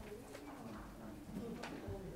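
Faint, low murmur of voices in a small room, with a light knock about one and a half seconds in.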